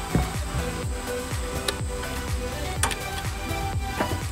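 Background electronic music with a steady beat of falling bass thumps, about two a second.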